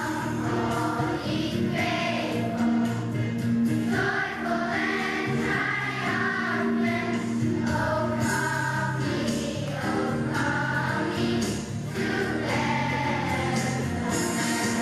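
Children's choir singing a song together with hand motions, over a steady instrumental accompaniment.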